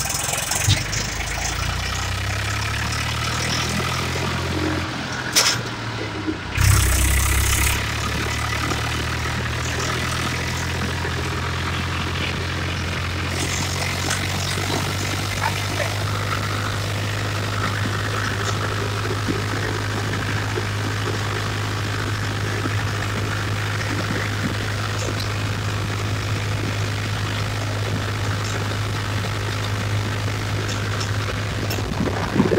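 Eicher 380 tractor's diesel engine running steadily as it drives along a road, a low drone heard from the seat. About five seconds in the sound dips briefly, then comes a louder surge for about a second before it settles back into the even drone.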